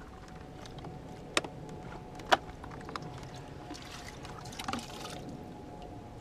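Plastic classifier sieve being handled and lifted out of a water-filled bucket, with water sloshing and dripping. Two sharp plastic clicks come about a second apart, the second the loudest, and a few softer knocks follow later.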